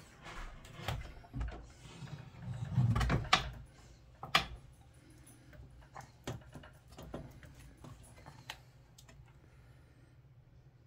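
Pinball machine playfield being lowered back into the cabinet: a run of knocks and clunks, heaviest about three seconds in, with a sharp knock just after and then scattered lighter clicks.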